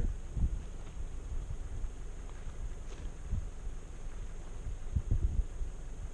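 Wind buffeting the microphone: a steady low rumble with uneven stronger gusts, the strongest about five seconds in.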